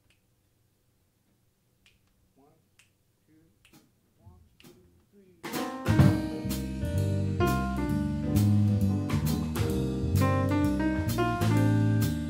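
A few faint clicks and a soft voice, then about halfway through a small jazz band of grand piano, electric guitar, electric bass and drum kit comes in together on a tune and plays on at a steady level.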